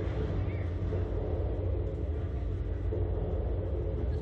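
Steady low rumble of outdoor background noise on the ride capsule's onboard microphone, with a short faint voice about half a second in.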